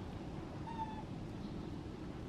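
Young macaque giving one short, slightly falling squeak-like coo about three quarters of a second in, over a steady low background rumble.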